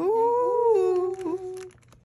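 A woman's drawn-out, high "ooh" of admiration, rising in pitch, held, then falling and fading out near the end.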